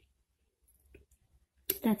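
A pause in the speech: near silence with room tone and a faint click about halfway through, before a woman's voice starts speaking near the end.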